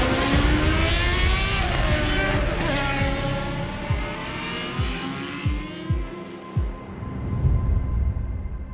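Racing car engines revving hard and passing, their pitch rising and falling over the first three seconds, followed by five deep thumps, each dropping in pitch, spread over the next few seconds.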